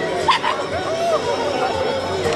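A dog barks twice in quick, sharp succession about a third of a second in, over background voices.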